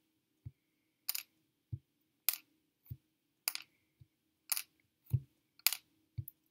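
Wooden toothpicks being pulled one by one from Play-Doh and laid down on a tabletop. Sharp light clicks alternate with soft low knocks, a little under two a second.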